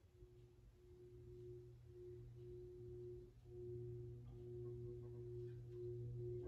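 Metal singing bowl being rubbed around its rim with a mallet, giving a faint, continuous singing tone that slowly swells. Higher overtones join about halfway through.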